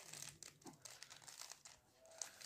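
Faint plastic clicking and scraping of a 3×3 Rubik's cube as its layers are turned by hand: a string of quick turns during a solving move sequence.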